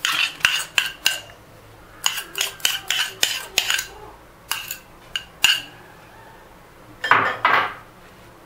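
Metal fork clinking against a small ceramic bowl while scooping out candied fruit cubes, a run of quick, light clinks in several bursts. About seven seconds in come two louder, duller knocks.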